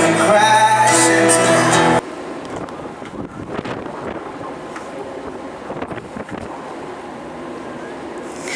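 A singer and band playing for about the first two seconds, cut off suddenly. Then wind buffeting the microphone, a steady rushing noise with small crackles.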